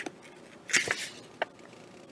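Page of a paperback picture book being turned by hand: a short paper swish and rustle a little under a second in, then a light tap.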